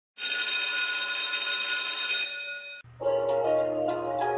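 A bell rings steadily for about two seconds, then fades away. About three seconds in, intro music begins, with xylophone-like mallet notes.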